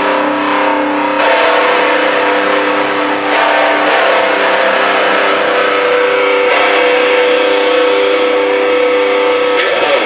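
Distorted electric guitars holding long, ringing chords, moving to a new chord a few times, then cutting off just before the end.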